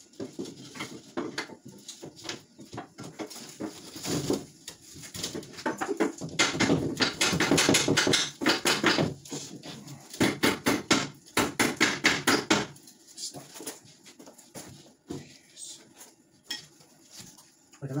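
A fast run of clicking knocks in two stretches of two to three seconds each, about six and ten seconds in, as a drywall sheet is fastened to the wall studs.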